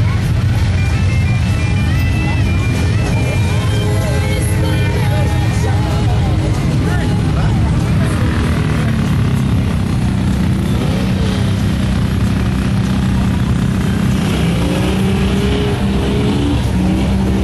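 Side-by-side UTV engine running steadily, with music and people's voices mixed in over it.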